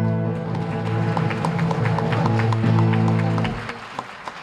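A man sings long final notes to a strummed acoustic guitar, and the song stops about three and a half seconds in. Scattered hand-clapping starts about a second in and builds into applause as the music ends.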